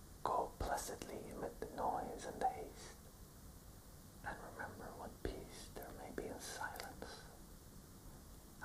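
A man whispering in two phrases, with a pause of about a second and a half between them.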